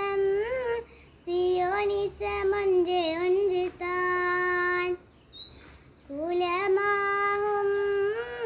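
A young girl singing a qaseeda, an Islamic devotional song, solo and unaccompanied. She holds long steady notes with ornamented turns, in phrases broken by short pauses about a second in and about five seconds in.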